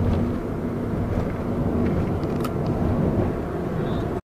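Steady rumble of a road vehicle's engine and tyres, heard from inside the moving vehicle.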